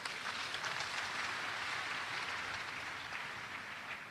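Congregation applauding, faint and steady, dying away toward the end.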